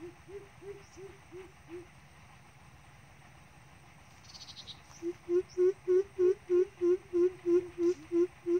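Greater coucal's deep hooting call: a short series of five low notes, then, after a pause and a brief high chirp, a louder, even series of about a dozen notes at roughly three a second.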